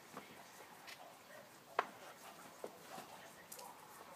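Quiet outdoor background with a few light, sharp clicks or taps, the loudest a little under two seconds in and two fainter ones later.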